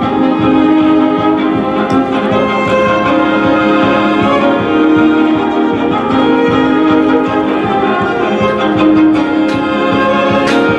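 Electric violin played live and amplified, a bowed melody over a recorded backing track coming from a small PA speaker.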